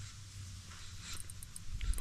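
Quiet outdoor ambience: light wind on the microphone with a steady low rumble, a few faint high ticks about a second in, and a dull low thump near the end.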